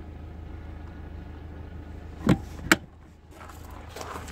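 Cargo-floor storage lid in an SUV's boot being lowered and shut: a thump a little over two seconds in, then a sharper knock a moment later, over a steady low hum.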